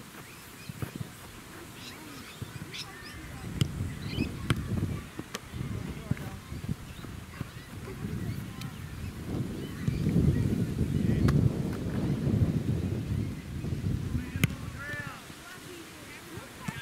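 Australian-rules footballs being kicked and marked on an open oval: several sharp thumps scattered a second or more apart. Under them is a low rumble of wind on the microphone, strongest from about ten seconds in, with a short call near the end.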